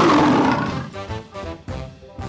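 A recorded tiger roar played as a sound effect, loud at the start and dying away within about half a second, over background music.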